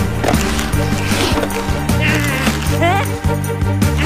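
Cartoon background music with steady bass notes. About two seconds in comes a short, high, wavering squeak, followed just before three seconds by a quick rising glide.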